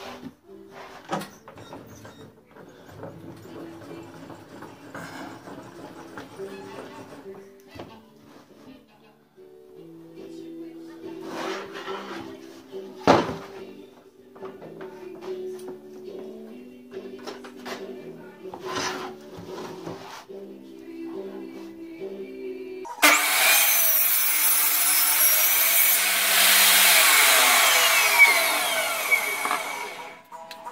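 Table saw switched on about three-quarters of the way through, its blade running and ripping a board for about seven seconds, louder once it is in the cut and dropping away at the very end. Before that, soft background music with a few sharp knocks of the board and fence being handled on the saw table.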